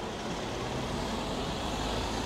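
Steady street traffic noise, with a vehicle engine running low and even.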